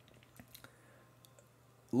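A few soft, irregular clicks of computer keyboard keys.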